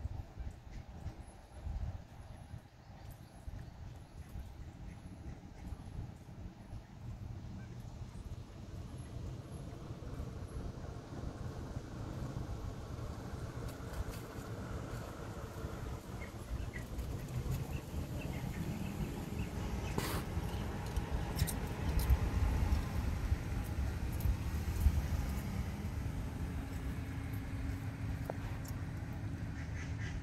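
Waterfowl calling now and then from the lake, over a low rumble that grows louder in the second half. A sharp click about twenty seconds in.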